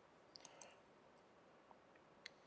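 Near silence: quiet room tone with a few faint clicks about half a second in and one more near the end.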